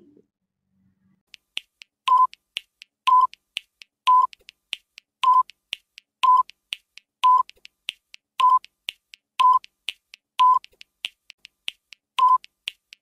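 Quiz countdown timer sound effect: a short beep about once a second, with faint ticks in between, starting about a second in.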